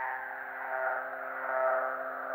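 A soft chord held steady on several notes, dull with no highs, from the band's instruments during a break in the song.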